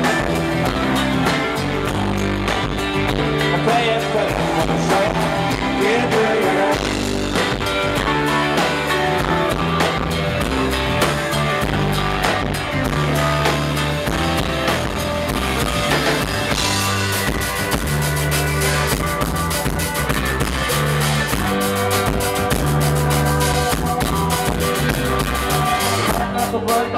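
Live rock band playing loud amplified music, with electric guitars, keyboards, bass and a drum kit, heard as a recording from the audience.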